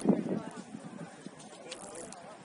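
Distant shouts and calls from players on a football pitch, loudest about the first half second. A short hiss-like noise comes near the end.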